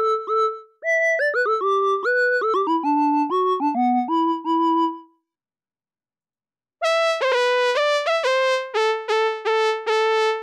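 MRB Tiny Voice software synthesizer playing a monophonic lead melody, one note at a time, each note scooping up in pitch into its tone through a modulated glide. After a pause of about a second and a half, a brighter, brassier trumpet lead preset plays a second phrase.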